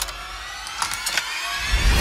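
Trailer sound effects: a key clicks sharply in an ornate lock, then clicks a few more times about a second in as it turns. Under it a sustained tone climbs slowly and swells into a deep rumble near the end.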